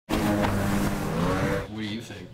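A person's voice held in a long, wavering drone that fades out about a second and a half in.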